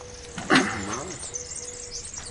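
A short pitched vocal sound about half a second in, its pitch rising and falling, over a faint steady hum.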